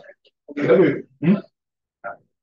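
A man's voice speaking in two short bursts: a longer phrase about half a second in and a brief word just after.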